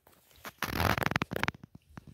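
Paper sheet rustling and crackling as it is handled on top of a plastic basin, a dense burst about half a second in lasting about a second.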